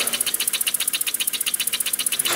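Homemade brass oscillating engine running fast on low-pressure compressed air, its exhaust giving a rapid, even train of hissing puffs, about a dozen a second. It runs freely, no longer binding, now that the flywheel is supported on both sides.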